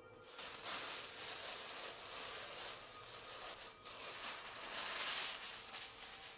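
Paper and tissue paper rustling as sheets are handled and pulled from packing. It starts a moment in and swells near the end.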